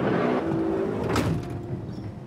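A minibus van's sliding side door rolled shut, ending in a sharp slam about a second in. Background music plays underneath.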